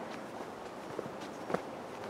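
Footsteps of someone walking on a brick-paved path, three steps over a steady background hiss.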